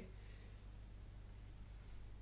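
Faint strokes of a felt-tip whiteboard marker on a whiteboard as a short arrowhead is drawn, over a low steady hum.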